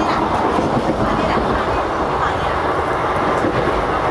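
Steady rumble and rattle of a moving passenger train, heard from inside the coach.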